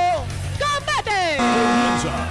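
Drawn-out shouting voices over loud background music with a steady low beat.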